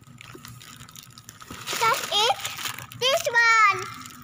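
A young child's high voice: two short vocal sounds about two seconds in and a longer, louder one near the end. Before them, faint rustling of plastic snack packets being handled.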